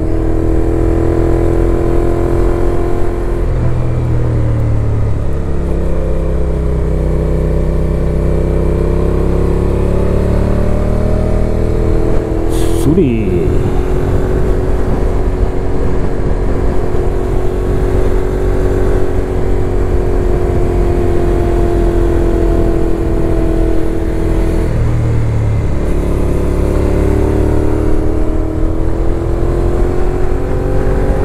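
Suzuki Gladius 400's V-twin engine running at a steady cruise, heard from on board the motorcycle with wind rush on the microphone. The engine note dips and picks up again briefly about four, thirteen and twenty-five seconds in, with a short click at the second dip.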